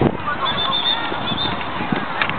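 A hockey stick hits the ball once with a sharp click, then a thin, high, wavering squeal lasts about a second over children's voices.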